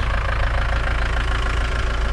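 Ice cream van's engine idling, a steady low running hum that does not change.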